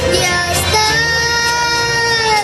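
A young boy singing a mariachi song through a microphone and PA, holding one long note from under a second in, over instrumental accompaniment.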